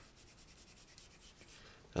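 Apple Pencil tip stroking and tapping on an iPad's glass screen: a faint run of quick, light scratchy strokes.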